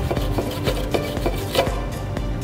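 Wire brush scrubbing rust off a shock absorber's mounting bolt in short, quick strokes, over steady background music.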